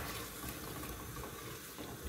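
Tomato sauce with chickpeas sizzling and bubbling softly in an aluminium pot over a lowered gas flame, a steady low hiss.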